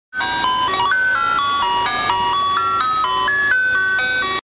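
Ice cream truck's music box playing its electronic chime jingle: a quick melody of bright, clean notes, about four notes a second.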